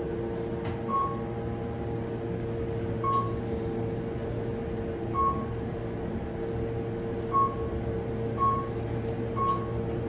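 Kone traction elevator car in travel: a steady hum of the moving car, with six short single-pitch beeps of the floor-passing signal, about two seconds apart at first and about a second apart near the end.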